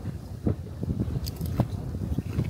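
A tortilla chip with guacamole being bitten and chewed close to the microphone: several irregular crunches.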